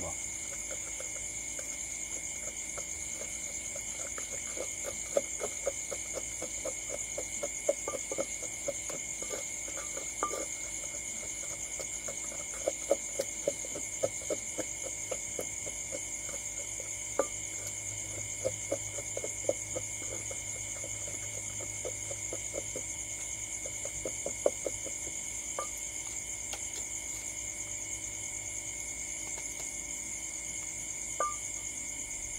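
Wooden pestle pounding in an earthenware mortar: runs of short knocks, a few a second, with pauses between the runs. Behind it is a steady high chirring of night insects.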